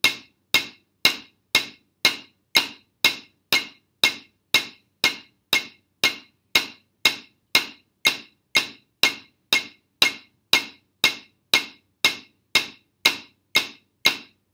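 Single paradiddles played on a rubber practice pad with wooden drumsticks, one even stroke about every half second, in time with a metronome clicking at 120 beats a minute.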